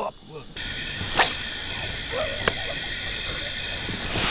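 Taut fishing line humming steadily under the pull of a hooked carp, a thin high singing the angler calls a "piano sound". Two sharp clicks sound about a second in and halfway through.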